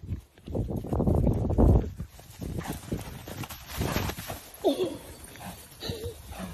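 A horse's hooves thudding on grass as it runs up, loudest in the first two seconds. A short pitched sound, rising and then falling, comes near the end.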